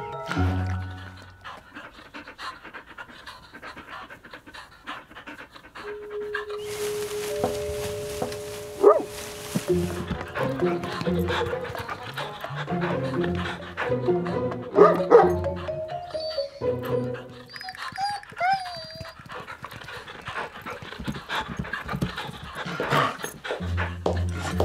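Cartoon pet triceratops panting like a dog, over light background music. A hiss runs for about three seconds, starting about seven seconds in.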